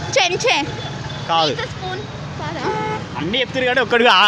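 Voices talking over a steady rumble of road traffic, with a vehicle horn sounding briefly just under three seconds in.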